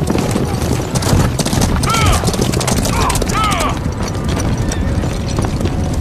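A group of horses galloping, a dense rumble of hoofbeats on dirt. A few short, high, arching calls cut through it about two and three seconds in.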